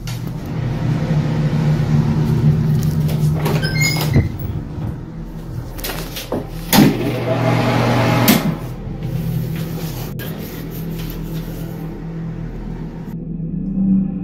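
Handling noise, clicks and knocks from a handheld phone camera carried through a bathroom, with a brief louder rush and knock in the middle and a click about eight seconds in as a wall light switch is flipped, over a low steady hum.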